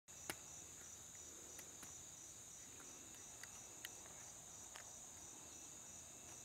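Faint, steady, high-pitched chorus of insects in the woods, with a few soft clicks scattered through it.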